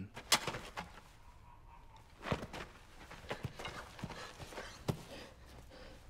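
Quiet, scattered soft knocks and clicks, a dozen or so at uneven intervals, the loudest just after the start and about two seconds in.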